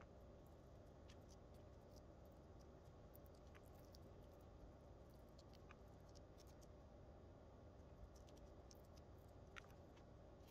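Near silence: a low steady hum with faint, scattered small clicks and ticks of a brush and gloved hands working over a beaded mask while spreading epoxy.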